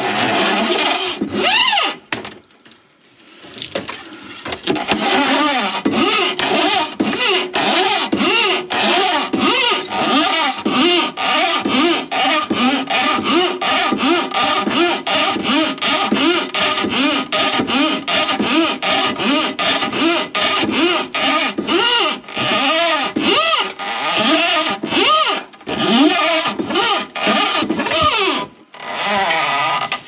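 Electric drum drain-cleaning machine running, its spinning cable rattling and scraping inside a blocked sink drain pipe in rapid uneven pulses. It eases off briefly about two seconds in, then runs on.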